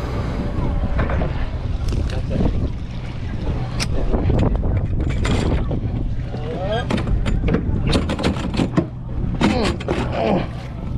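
Wind on the microphone over a low steady drone from the yacht, with voices in the background. From about seven seconds in, a quick run of clunks and knocks as a fibreglass hatch lid is lifted and the stainless swim ladder under it is handled.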